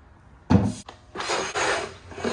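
Aluminum camping-table legs and tabletop being handled: a sharp knock with a deep thump about half a second in as the table meets the concrete floor, a small click, then nearly a second of scraping as the legs are stowed into the clips on the underside of the top.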